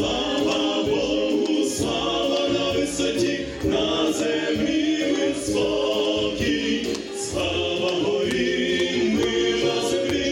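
Small mixed vocal ensemble, men's voices with one woman's, singing a Ukrainian Christmas carol in close harmony through microphones, in phrases with short breaths between.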